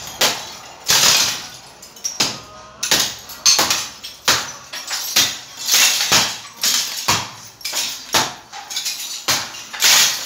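A hammer striking and breaking up a wall of hollow clay bricks. The blows come irregularly, about one to two a second, each with a sharp crack of shattering brick and a short rattle of falling fragments.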